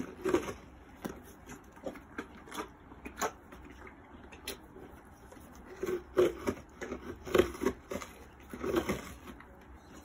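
Pony licking and biting at a block of ice with frozen carrots and apples in a rubber feed bowl: irregular short crunches and knocks, coming in clusters as the block is nudged around the bowl.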